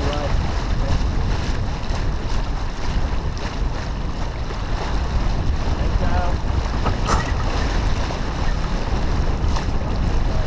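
Steady wind buffeting the microphone over the rush of water along the hull of a heeled sailboat under sail. Faint voices come through briefly about six and seven seconds in.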